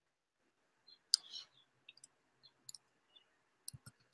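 Typing on a computer keyboard: a few faint, irregular key clicks, the loudest a little over a second in.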